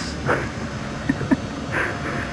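Wind rumbling on the camera's microphone, with a few short breathy puffs of a man laughing.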